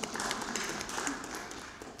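Small audience applauding, a scattering of many quick claps that thins out toward the end.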